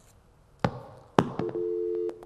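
Telephone line going dead on a call: two clicks, then a steady busy tone from about one and a half seconds in. This is the sign that the caller's connection has been cut off.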